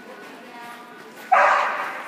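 A dog barking once, about a second and a half in.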